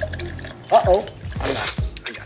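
Liquid pouring from a bottle into a glass, over a short spoken remark and background music.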